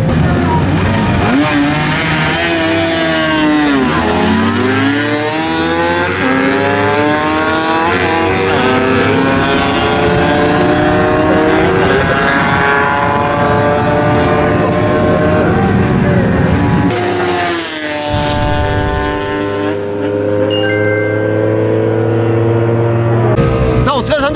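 Two sport motorcycles launching off a drag-strip start line and accelerating hard, engines revving high with the pitch climbing in repeated sweeps as they pull through the gears.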